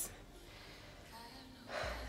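Quiet room tone, then a woman's audible intake of breath near the end.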